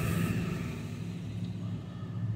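Steady low vehicle hum heard from inside a car's cabin.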